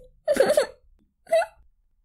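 A person's voice making two brief sounds without recognisable words, the first about half a second long, the second shorter, about a second later.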